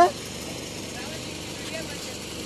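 The end of a short shouted word right at the start, then a steady, even background hum with faint distant voices.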